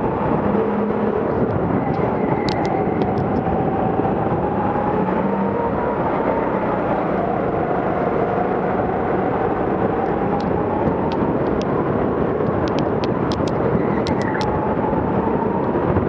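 Go-kart engine running hard as heard from the driver's seat, its pitch rising and falling with the kart's speed through the corners. Short sharp clicks come in a few spots, a cluster of them near the end.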